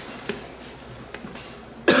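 A person coughs once, a sudden loud cough near the end; before it there is only faint background with a few small clicks.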